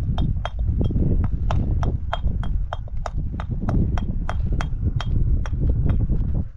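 Hammer chipping building stone: a quick, even run of sharp ringing chinks, about three blows a second, over a low rumble.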